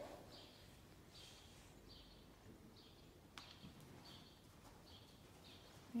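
Near silence: faint room tone with soft scuffs recurring a little more than once a second and a couple of faint clicks midway.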